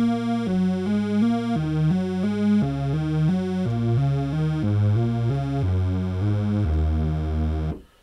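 Yamaha TG77 FM tone generator playing a supersaw-like patch: three detuned, out-of-phase sawtooth waves over a sub-octave oscillator. A run of short notes, a little under three a second, ends on a held note about a second long that cuts off sharply.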